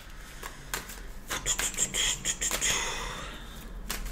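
A tarot deck being shuffled in the hands: a few soft card clicks, then a denser run of card rustling and flicking about a second in that fades away before the end.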